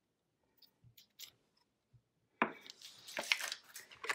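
A measuring teaspoon of salt being tipped into a small ceramic bowl: a few faint ticks, then a sharp click of the spoon on the bowl about two and a half seconds in, followed by a short rustle of falling salt grains.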